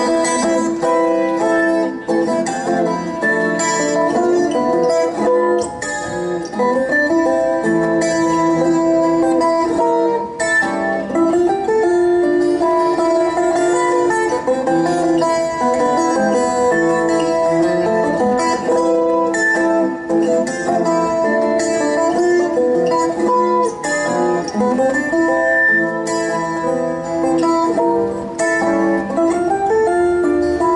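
Colombian tiple, a small guitar with twelve steel strings in four courses of three, played solo: a bambuco melody in a continuous run of plucked notes.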